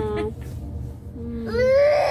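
A baby's long, high-pitched wailing cry that starts about a second and a half in, rising and then falling. It sits over a steady low rumble in the car's cabin, and the tail of a woman's sung phrase ends just at the start.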